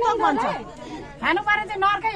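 Speech only: people in a crowd talking, with voices overlapping.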